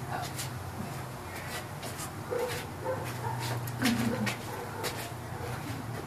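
A dog whimpering a few times in short, high calls, over scattered clicks and a steady low hum.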